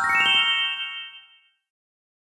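A quick rising run of bright, bell-like chime notes that ring on and fade out over about a second and a half: an edited sparkle sound effect.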